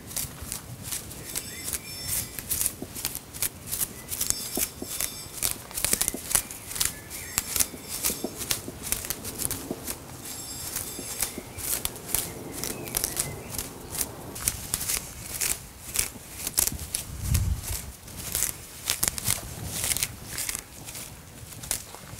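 Japanese maple leaves being plucked off by hand, a quick irregular run of crisp little snaps and rustles of foliage.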